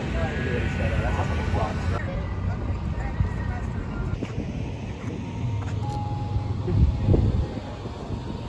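Outdoor ambience of indistinct voices over wind on the microphone and a steady low vehicle rumble.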